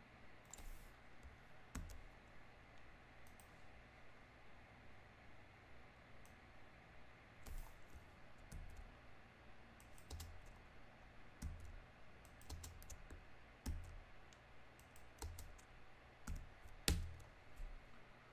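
Faint, irregular clicking of a computer keyboard and mouse as code is edited, with one louder click near the end.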